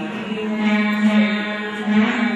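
Ensemble of veenas playing Carnatic music together, with a steady low note held throughout and melody notes sounding above it.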